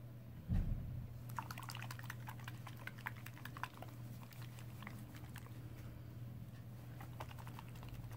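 Small glass ink bottle's black screw cap being twisted off and handled: a low knock about half a second in, then a quick run of light clicks and ticks, with a few more near the end.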